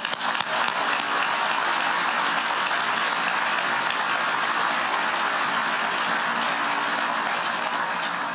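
Large audience applauding steadily, a dense wash of many hands clapping.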